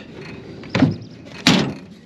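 Two sharp metal knocks a little under a second apart from the steel battery compartment of a forage harvester, as its lid and batteries are handled.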